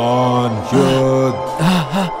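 Low, deep chanting over background music: two long held notes, then a shorter wavering one near the end.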